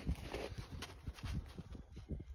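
A hound sniffing and nosing at a coyote carcass in snow: soft, irregular scuffs and snuffles.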